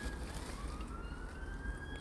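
Faint emergency-vehicle siren wailing in one slow upward sweep of pitch, over a steady low rumble.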